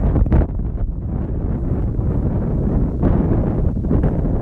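Wind buffeting a phone's microphone, a loud, uneven low rumble.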